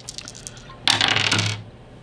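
A handful of small plastic game coins dropped onto a wooden table, clattering for under a second about a second in.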